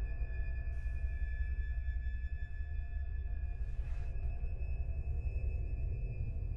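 Dark ambient film score: a deep, steady low drone under several long-held high tones, with a brief hissing swell about four seconds in.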